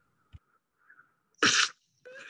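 A short, loud burst of hiss-like noise about one and a half seconds in, from a clay stop-motion animation's soundtrack as a snowball knocks a clay snowman over. A faint low thump comes just before it.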